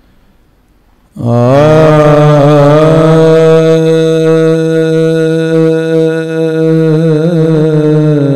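A man reciting a naat, singing one long held note into a microphone. It begins about a second in and wavers through melodic ornaments along the way.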